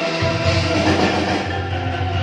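Live kentongan ensemble music: bamboo slit drums and pitched bamboo instruments played together over a pulsing low bass line.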